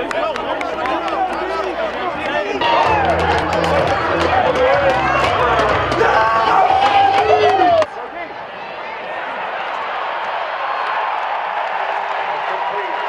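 Many football players' voices shouting and yelling together in a pregame team huddle, loud and overlapping, with music underneath. About eight seconds in it cuts off suddenly to a quieter, steady stadium crowd noise.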